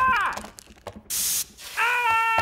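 A high-pitched cry falling in pitch at the start, a short hiss about a second in, then a long, steady, high-pitched cry that begins near the end.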